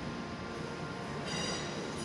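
London Northwestern Railway Class 350 Desiro electric multiple unit pulling out of the station with a steady rumble, and a brief high-pitched squeal about one and a half seconds in.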